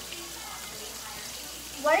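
Steady sizzle of food frying in hot fat in a pot on the stove.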